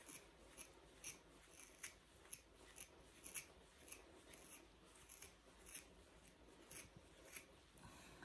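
Faint, repeated short rasping strokes of a hand-stripping tool pulling wiry terrier coat out by the roots, about two pulls a second.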